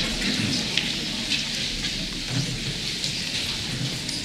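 An audience clapping in an auditorium: an even patter of many hands, easing off slightly.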